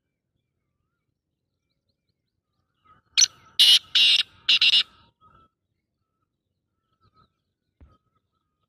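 A francolin (teetar) giving one loud, harsh call of four quick notes about three seconds in.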